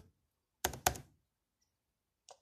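Two sharp keystrokes on a computer keyboard, about a quarter second apart: the Return key pressed to bring up the switch's command prompt.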